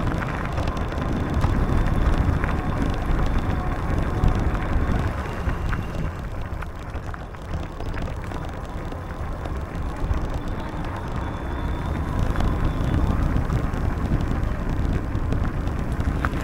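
Steady low rumble of wind on the microphone and bicycle tyres rolling over an asphalt path during a ride.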